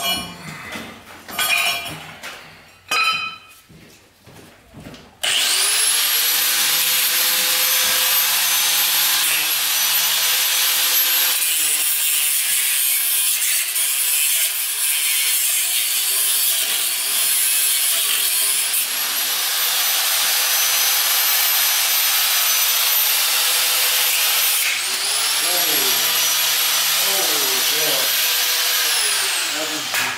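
A few knocks and handling clatter, then about five seconds in a corded angle grinder spins up and cuts steel continuously with a steady high whine. Near the end the whine dips and spins back up briefly, then winds down as the grinder is released.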